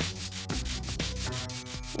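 Pencil lead rubbed rapidly back and forth across a notepad page in quick scratchy strokes, shading the paper to bring out indented writing.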